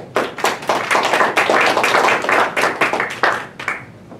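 Audience applauding: a few claps build quickly into dense clapping, then thin out to scattered last claps near the end.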